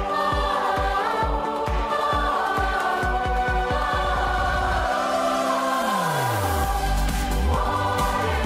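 Large youth choir singing with instrumental backing that has a deep pulsing beat, about three pulses a second. About six seconds in, the beat gives way to a deep bass note sliding downward.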